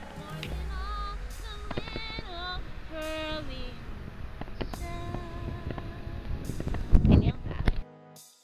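A woman singing wordlessly, her voice wavering, over wind rumbling on the microphone, with a loud rush of wind or handling about seven seconds in.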